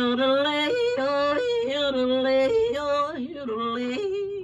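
A woman singing a yodel-like call, her voice jumping back and forth several times between a low note and one about an octave higher, with a wavering vibrato on the held notes. It is her demonstration of the 'call off' that her father sang when serenading.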